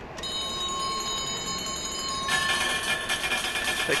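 Slot machine cashing out. Steady electronic tones start just after the beginning, and about two and a half seconds in the ticket printer starts running with a buzzy whir as it prints the cash-out voucher.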